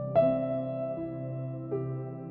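Slow, soft piano lullaby music: a few struck notes ringing out over a steady held low tone.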